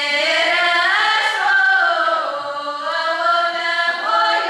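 A children's folk ensemble of girls singing a Russian folk song together, unaccompanied, with the voices gliding between notes.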